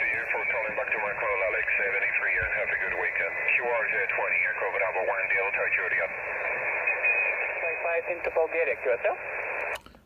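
A distant amateur station's voice received on single sideband through a Yaesu FT-817 transceiver's speaker: thin, narrow-band speech over a steady hiss of band noise, cutting off abruptly near the end.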